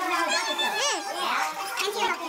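Children's voices chattering over one another, with one high-pitched voice sweeping up and down in pitch just under a second in.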